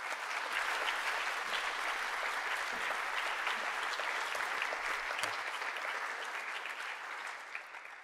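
Auditorium audience applauding: steady clapping that builds quickly at the start and fades away near the end.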